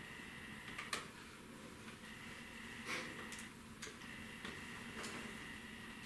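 Faint small clicks and taps from a portable DCC player's plastic casing and circuit board being handled as the board is worked out of the case, about half a dozen scattered through, over a faint steady hum.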